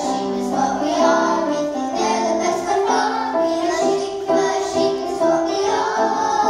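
A group of children singing a song together, holding notes and moving from note to note without a break.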